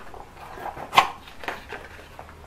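A small cardboard box being handled and opened by hand: quiet rustling, one sharp snap about a second in and a lighter click about half a second later.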